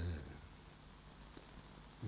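A short breathy vocal sound from a man at the microphone, then quiet room tone with one faint click about one and a half seconds in.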